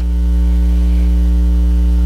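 Steady electrical mains hum in the microphone and sound-system feed: a deep, unchanging drone with a buzzy row of overtones, loud against the speech around it.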